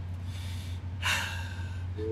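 A person breathing out sharply into a close microphone: a faint short breath, then a louder, longer one about a second in. A steady low hum runs underneath.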